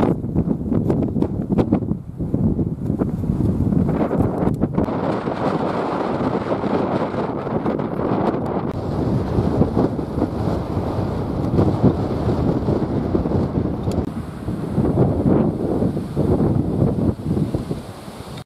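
Strong wind buffeting the camera microphone: a loud, uneven rumble that rises and falls with the gusts.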